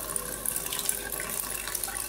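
Water running in a steady stream from a Xiaomi countertop water purifier into a steel sink, its waste-water tube flowing continuously.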